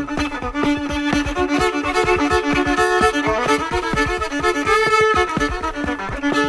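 Instrumental fiddle break in an old-time tune: held and double-stopped fiddle notes over a steady percussive beat.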